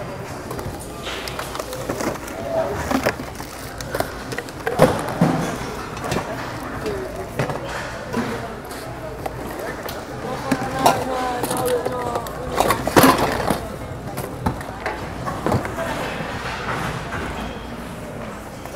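Hands rummaging through a bin of mixed plastic items: toys, containers and bottles clattering and knocking against each other and the plastic bin, with a few sharper knocks.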